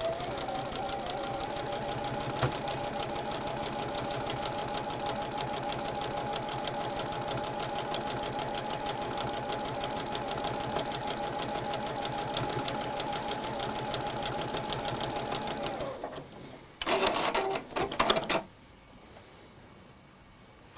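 Juki computerised sewing machine stitching a seam at a steady, fast speed: rapid needle strokes over a steady motor whine for about sixteen seconds. It stops, then runs again briefly for about a second and a half, then falls quiet.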